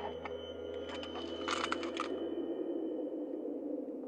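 Eerie sustained tones of a film score's suspense drone, with a short burst of clicks and rustles about a second and a half in.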